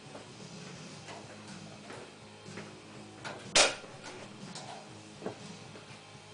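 Light clicks and one sharp knock about three and a half seconds in, with a smaller knock near the end, from hands and tools working on a race car's engine that is not running.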